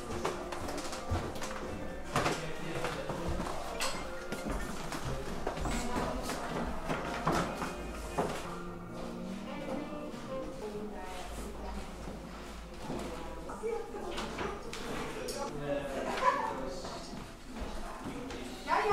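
Indistinct chatter of visitors talking in a room, with music playing in the background.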